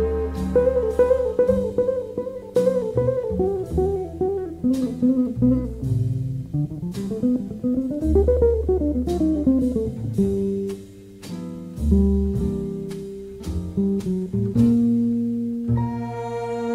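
Jazz ballad with an electric jazz guitar playing the melody in single-note lines and a run that climbs and falls back, with low bass notes beneath. Longer held notes follow in the last few seconds.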